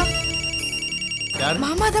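Mobile phone ringing with a steady high electronic ring tone, which stops about a second and a half in as a voice speaks briefly.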